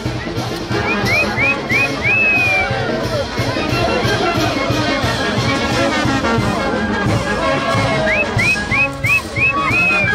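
Brass band playing festive dance music with a steady beat, trumpets and trombones leading. A run of short, rising high notes comes twice, about a second in and again near the end.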